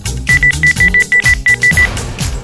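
Rapid electronic beeping: about ten short high beeps at one pitch in quick succession, some six a second, over background music with a steady beat.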